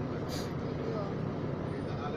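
Steady engine and road noise heard from inside a moving vehicle, with faint voices in the background.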